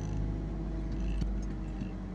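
Car engine running with a steady low hum, heard from inside the cabin.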